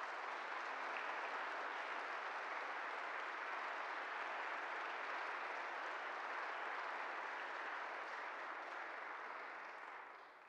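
Audience applauding in a church after a choir piece: steady clapping that dies away at the very end.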